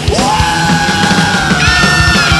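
Thrash metal song in a stretch without lyrics: fast drums and distorted guitars under one long high held note that slides up at the start.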